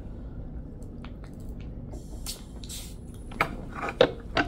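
Scattered light clicks and a short rustle as a small plastic syrup cup is picked up from a breakfast tray, the sharpest click near the end, over a steady low room hum.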